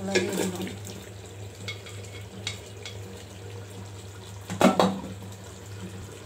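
Chicken pieces and potatoes tipped from a bowl into hot masala in an aluminium pot, sizzling, with scattered clicks and a loud clatter against the pot about four and a half seconds in.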